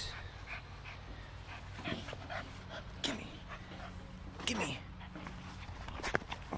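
Blue Staffordshire bull terrier playing with and chewing an old leather boot, giving three short falling vocal sounds, with scattered clicks from its mouth on the boot.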